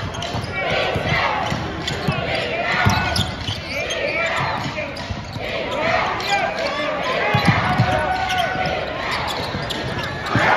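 Basketball dribbled on a hardwood court, with low thuds now and then, under the continuous shouting and chatter of players and crowd in a large, echoing arena.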